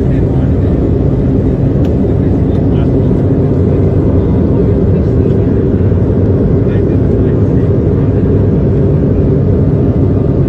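Loud, steady low mechanical drone that starts abruptly and holds level throughout.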